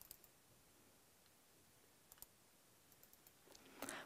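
Near silence, with a few faint clicks: one near the start and another about two seconds in.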